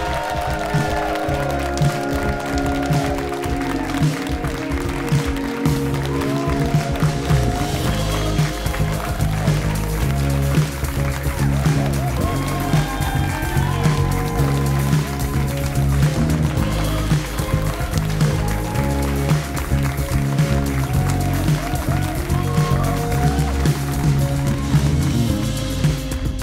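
A studio band playing the show's closing music, with a steady bass line under guitar and a regular drum beat.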